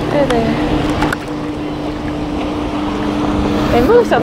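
Pontoon boat's outboard motor running at a steady pitch while under way, with wind and water rushing past the hull.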